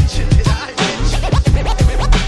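Old-school hip hop instrumental beat with no vocals: drums and deep bass with turntable scratching, quick arching pitch sweeps repeating over the beat.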